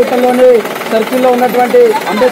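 Several men's voices shouting slogans together, in loud, held calls that repeat about every half second, in the close space of a vehicle.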